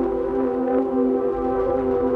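Ambient electronic music: synthesizers hold one steady chord of sustained tones, a drone without any attack or rhythm.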